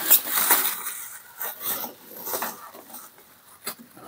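Plastic bubble wrap crinkling and rustling as it is pulled back by hand. It is loudest in the first second or so, then trails off into a few light crackles.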